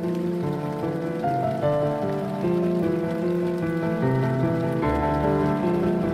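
An even hiss of rushing river water over white-water rapids, under background music with slow, sustained notes.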